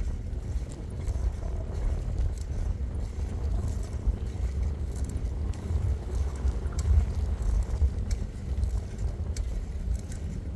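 Wind buffeting the microphone of a moving bicycle, a steady, uneven low rumble, with the tyres rolling on an asphalt path.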